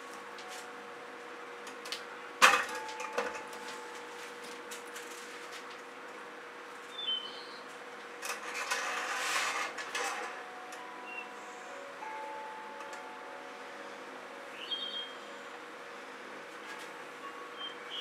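Quiet studio room tone with a steady hum, broken by a sharp knock about two and a half seconds in and a short scraping rustle around nine to ten seconds in, as painting tools are handled and worked against the canvas.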